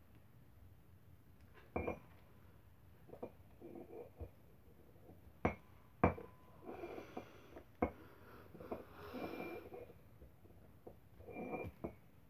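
A small metal bar knocking and scraping on a concrete floor, about five sharp knocks with gloved hands rustling and handling stiff rope in between.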